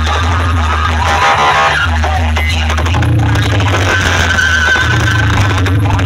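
Loud DJ music blasting from a competition sound setup of stacked bass boxes and pole-mounted horn loudspeakers, with a heavy, unbroken bass and a wavering high tone about two-thirds of the way through. Two rival sound systems are playing against each other, so the music is layered and clashing.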